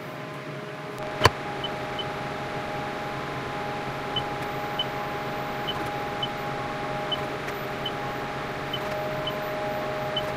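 CNC vertical mill running with a steady machine hum and whine that starts about a second in, as the spindle lowers a tool toward the tool setter. There is a sharp click just after the hum starts, and faint small chirps every second or so.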